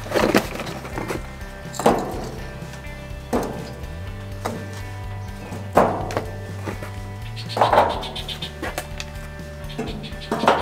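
Chunks of smoking wood set down one by one onto charcoal briquettes and bricks, each landing as a short wooden knock, five in all, a second or two apart, over background music.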